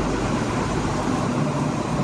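Class 43 HST power car's diesel engine running under power as the train pulls out, a steady engine and rail noise with no single louder event.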